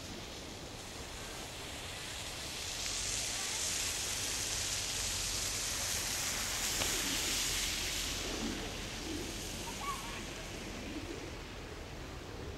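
Broad, steady outdoor hiss that swells for a few seconds and then eases off, with faint distant voices near the end.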